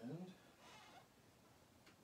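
A man's drawn-out, wavering "and" trailing off at the start, then a short soft hiss and near silence, with a faint click near the end.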